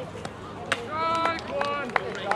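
High-pitched voices shouting and calling out after a swing at a youth baseball game, with a few sharp smacks in between. The loudest smack comes just under a second in, and another comes near the end.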